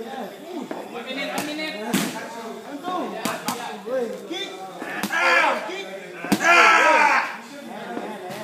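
Boxing gloves smacking into Thai pads: about six sharp, irregularly spaced strikes. Voices shout over them, loudest about five seconds in and again near the end.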